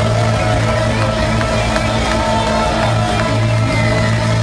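A ska band playing loudly and without a break: electric guitar, saxophone and a steady low bass line.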